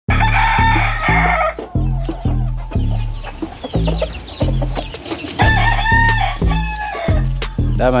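Gamefowl rooster crowing over background music with a heavy bass beat that repeats about twice a second.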